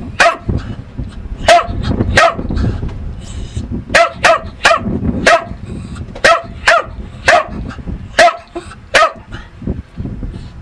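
A dog barking repeatedly: about a dozen short, sharp, high-pitched barks, some single and some in quick runs of two or three.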